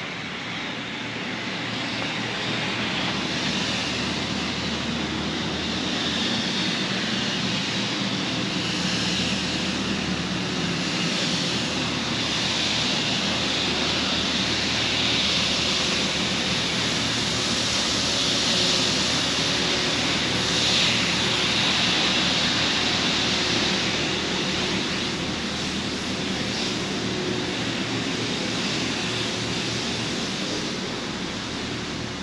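Steady rushing hiss and engine drone of a street-sweeper truck at work, swelling to its loudest a little past halfway.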